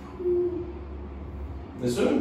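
A child's short hesitant hum while thinking, one held tone, followed near the end by speech starting.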